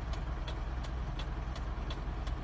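A motor vehicle engine running steadily as a low rumble, with a faint, regular tick about three times a second.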